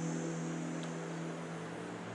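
A faint steady hum of several held low tones, fading slowly, over a soft even hiss.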